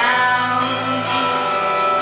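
Live band music with guitar, played on steady held chords.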